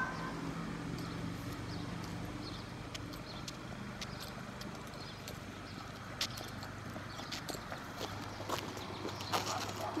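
Sneaker footsteps on a concrete sidewalk: scattered soft taps that come more often toward the end, over a faint steady low hum.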